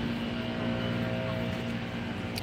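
A steady engine drone: a low, even hum with a few higher tones above it, unchanging in pitch.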